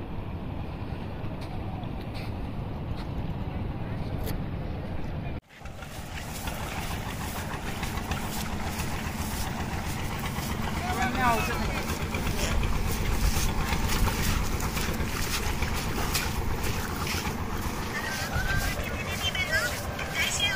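Outdoor river ambience: wind buffeting a phone microphone, then, after a sudden break about five seconds in, river water rushing over stones with faint distant voices.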